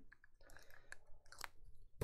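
Faint, scattered small clicks and crackles close to the microphone, over room tone.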